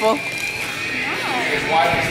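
Girls' voices: a brief high vocal sound about a second in that rises and falls in pitch, a little like a whinny, and then a voice starting up again near the end.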